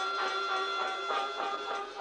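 High school marching band playing its field show, the notes shifting several times a second. The sound is thin, with almost no bass.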